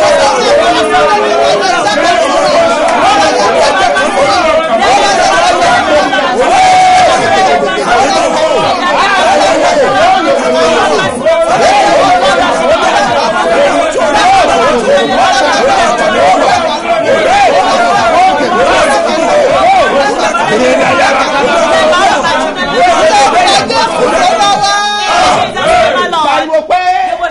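A man and a woman praying aloud at the same time, their loud voices overlapping, with no music. The voices break off briefly near the end.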